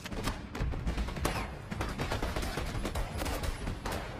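Gunfire in a film shootout: many shots in quick succession, with music underneath.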